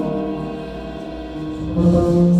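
A jazz ensemble playing live, mostly long held chords that dip a little and swell again near the end.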